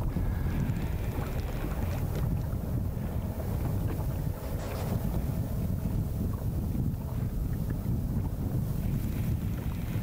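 Wind buffeting the microphone, a steady low rumble, over choppy lake water around a drifting boat.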